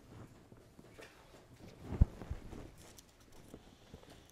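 A single dull, low thump about halfway through, with a fainter knock just after it, over quiet room tone with faint rustling.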